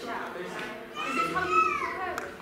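Children's voices speaking and calling out in a large hall, with a higher-pitched voice rising in the second half.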